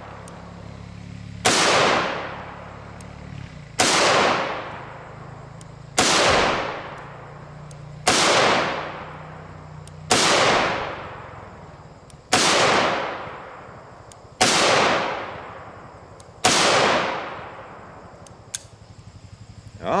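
A 10.5-inch AR-15 firing 5.56 NATO M193 rounds, eight single shots about two seconds apart, each ringing out in a long fading echo. Near the end the expected next shot doesn't come, only a faint click: a light primer strike.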